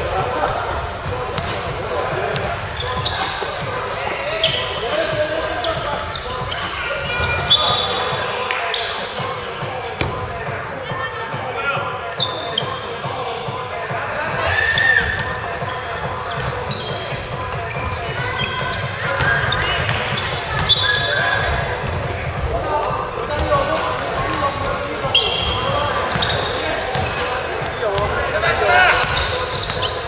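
A basketball being dribbled and bounced on a wooden gym floor during play, with scattered voices of players calling out, all echoing in a large sports hall.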